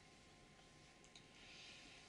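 Near silence: room tone, with a faint click just after a second in.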